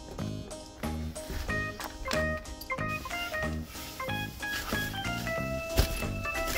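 Background music with a steady beat and bass line, a higher melody of held notes coming in about a second and a half in. A single sharp knock near the end.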